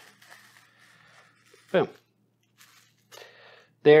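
Faint rustling and crinkling of plastic cling film being wrapped by hand around a portion of ground raw meat, in two short spells: one at the start and one about three seconds in.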